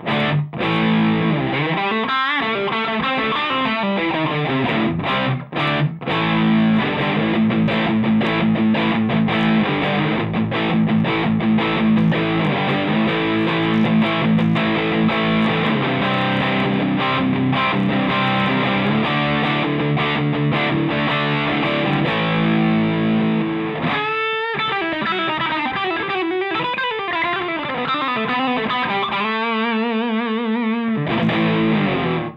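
Ibanez RG1550 electric guitar on its stock bridge humbucker, played through a Rothwell Heartbreaker overdrive pedal on its high-gain setting for a classic hard rock tone. It plays a distorted riff and lead lines, with a few short breaks early on, pitch slides, and a held note with vibrato near the end.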